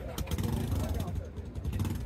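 A motorcycle engine running steadily at low revs, with a low rumble and a fast, even pulse, amid the voices of people talking.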